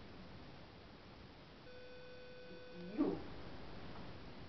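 A steady electronic beep lasting about a second, starting a little under two seconds in, cut off near the end by a short, loud sound that slides up and down in pitch.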